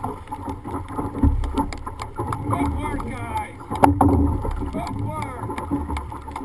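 A dragon boat crew's paddles catching and pulling through the water at about 70 strokes a minute, with steady splashing and a sharp knock about four seconds in.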